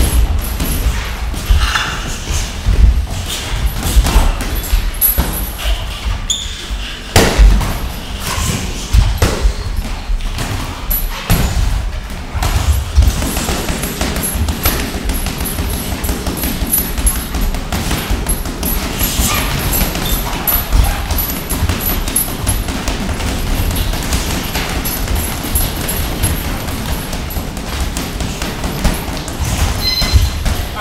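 Light boxing sparring: irregular thuds of feet stepping on the ring canvas and gloves landing, a few heavier knocks among them, with music playing in the background.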